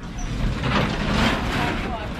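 A rush of wind and outdoor noise that builds up during the first second and stays loud, with people's voices faintly in the background, as the lift opens to the outside.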